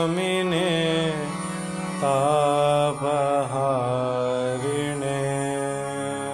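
A chanted Sanskrit invocation with long, held vocal notes over a steady drone. The singing pauses briefly about a second in and starts a new phrase at about two seconds.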